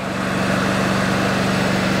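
Mini skid steer's engine running steadily: a low, even drone with a fast, regular firing pulse.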